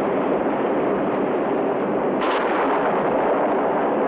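Loud, steady rushing roar from a film sound effect, with a brief sharper crash about two seconds in.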